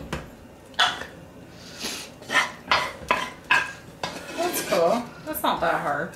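Wooden spatula scraping and knocking against a wok as stir-fried noodles are scooped out: a series of about seven short, sharp strokes.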